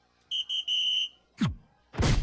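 Electronic soft-tip dartboard machine sounding off as a dart lands: two short high beeps and a longer one, then a falling whoosh near the end.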